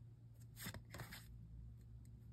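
Faint handling of a deck of oracle cards in the hands: a few soft slides and taps near the middle as a card is moved from the front to the back of the deck, over a low steady hum.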